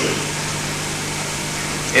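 Steady low hum with an even hiss underneath, the background noise of an old archive recording made through a microphone and PA, with no speech over it.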